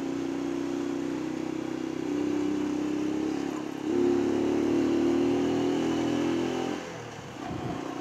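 Honda CG 125 Cargo motorcycle's single-cylinder four-stroke engine running under way, heard from the rider's seat. It gets louder about two seconds in and again just after a brief dip near four seconds, then drops away near seven seconds.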